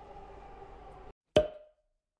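Faint background noise that cuts off abruptly about a second in, then a single short pop sound effect with a brief ringing tail.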